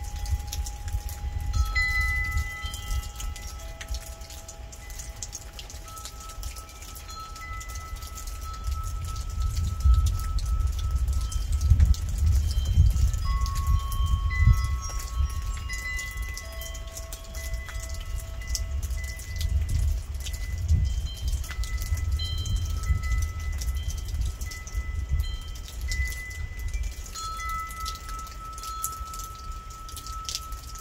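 Wind chimes ringing on and off, several tones of different pitch sounding and lingering for seconds over one another, over steady rain patter. Beneath them a low rumble swells and fades, loudest about ten to fifteen seconds in and again around twenty seconds.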